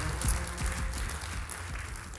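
Audience applause dying away over background music with a steady bass.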